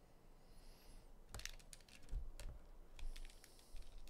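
Faint computer keyboard keys clicking in a few quick, scattered clusters.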